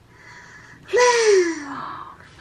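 A faint breath, then about halfway in a high, drawn-out vocal exclamation of wonder, like a gasped "ooh", that slides down in pitch over about a second.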